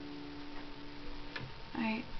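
The last chord of an acoustic guitar ringing out and dying away, followed by two faint clicks and a voice starting near the end.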